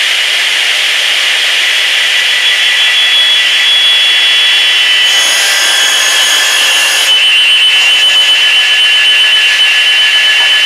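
Dimension saw (panel saw) running at full speed with a loud, steady high whine, just after spinning up. For about two seconds around the middle, extra high ringing tones join in as the blade cuts across the end of a board.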